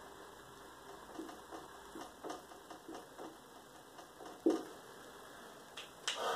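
Marker pen writing on a whiteboard: a string of faint short strokes and taps a few times a second, with one louder tap about four and a half seconds in.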